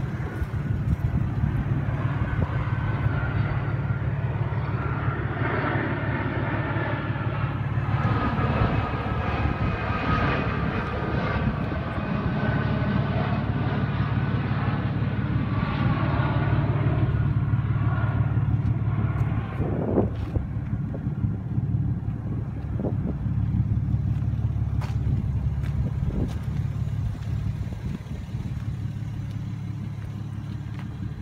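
Toyota Supra's naturally aspirated 2JZ inline-six idling steadily through an aftermarket exhaust, just started after sitting for a while.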